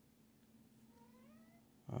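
A faint single animal call rising in pitch about a second in, over a quiet room.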